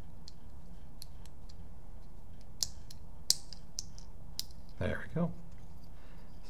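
Sparse small metal clicks and taps as the back cap, lever and pin of an Autococker paintball marker are handled and fitted by hand, the sharpest click about three seconds in.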